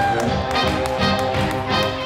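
Fast swing jazz band music with sustained, sliding melody lines over a quick steady beat, about four beats a second, played for Collegiate Shag dancing, with dancers' shoes tapping on the wooden floor.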